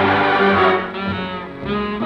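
Swing big-band music with brass from a 1945 78 rpm record, played on a wind-up gramophone through a circa-1931 moving-iron electric pick-up. A loud full-band swell comes in the first second, then the band plays on.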